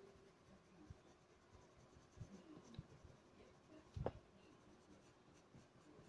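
Coloured pencil scratching faintly on drawing paper in short shading strokes, with one louder stroke about four seconds in.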